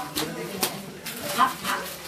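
Bubble wrap being popped by hand: a couple of sharp pops, with short high yelps around them.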